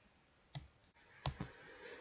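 A few short, separate computer mouse clicks, the first about half a second in and the last two close together.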